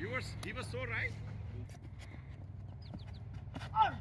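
Men's voices calling out across an open cricket field, with a louder shout near the end as the ball is bowled. A steady low hum fades out partway through, and a few faint clicks fall in between.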